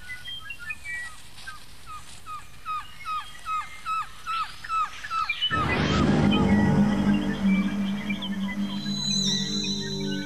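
A bird gives a steady run of short, hooked chirps, a little over two a second. About five and a half seconds in, a music chord swells in suddenly and holds, with a wavering high tone near the end.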